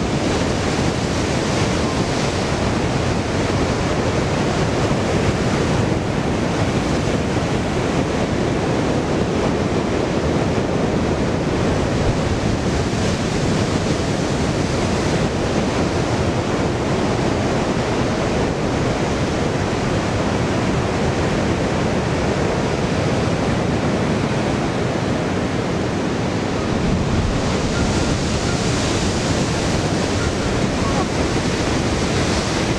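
Sea surf breaking against a rocky shore: a steady wash of noise that swells slightly near the end.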